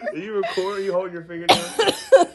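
A person laughing: a drawn-out vocal sound, then a loud coughing burst about one and a half seconds in.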